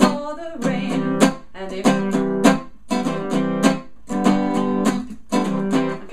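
Acoustic guitar strummed with a pick, each chord choked off by lifting the fretting fingers so the strings are dampened: short bursts of chord about once a second with silent gaps between. A woman sings along.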